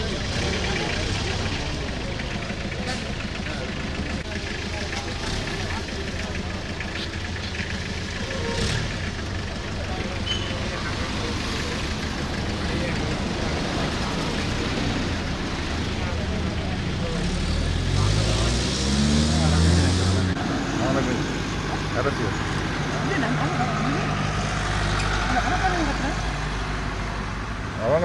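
Overlapping men's voices over road traffic and a vehicle engine running nearby. About two-thirds of the way through, an engine rises in pitch as it pulls away, with a hiss, then settles back to the mixed street noise.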